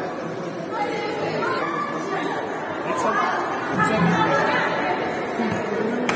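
Several people talking at once in a large indoor sports hall, their voices overlapping in chatter.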